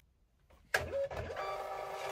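Munbyn thermal label printer printing a shipping label: a click a little under a second in, then a steady motor whine with several held tones as the label feeds out.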